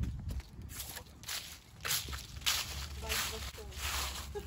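Footsteps shuffling through dry fallen leaves, rustling with each step, roughly twice a second.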